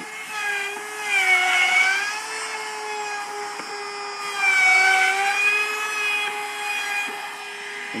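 Compact router running at high speed as it is pushed along a jig, cutting a groove into a three-quarter-inch MDF sheet to form a raised panel. Its steady whine dips in pitch and gets louder twice, about a second and a half and five seconds in, as the bit bites into the cut, then recovers.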